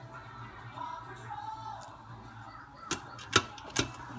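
Three sharp knocks in the last second or so: a spatula striking the stainless-steel inner pot of an Instant Pot as the rice starts to be stirred, the middle knock loudest, over a low steady hum.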